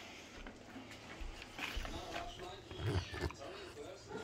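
A crated dog making a few short, faint vocal noises, with some soft low knocks.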